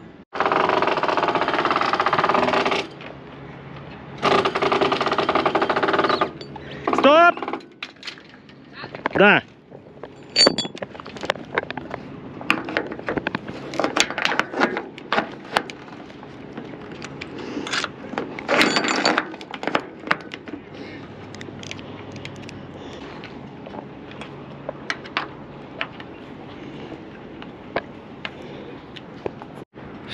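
Scattered metallic clicks and knocks from a new stainless-steel shroud's T-ball terminal being seated in its fitting on an aluminium mast and its bolt tightened. Loud rushing noise covers the first few seconds.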